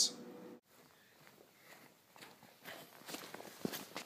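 Footsteps and light scuffs on outdoor ground, faint at first and growing louder near the end as the walker comes close.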